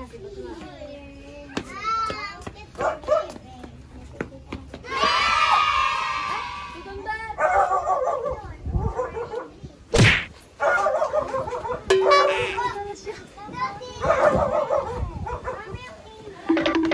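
Voices, a small child's among them, without clear words, with a single sharp thud about ten seconds in.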